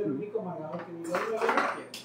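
Metal kitchen utensils clinking in an open drawer as one is picked out of it.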